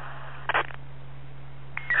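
Police radio channel heard on a scanner between transmissions: steady static hiss with a low hum, broken by one short burst about half a second in.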